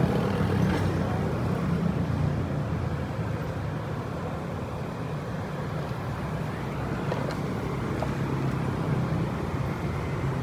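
Steady road traffic noise with a low engine rumble, a little quieter in the middle.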